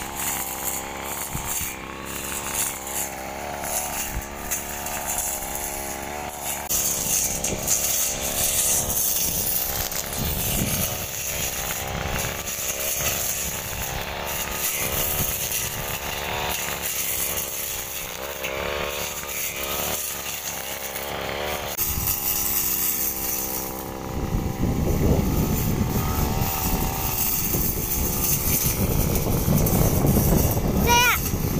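Backpack brush cutter's small engine running while cutting grass, its pitch rising and falling with throttle and load. In the last several seconds a louder low rushing rumble comes up over it.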